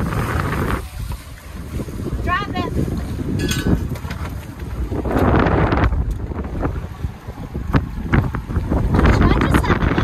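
Strong wind buffeting the microphone aboard a small open motorboat, a dense low rumble that swells and eases in gusts. About two seconds in, a brief warbling high-pitched sound cuts through.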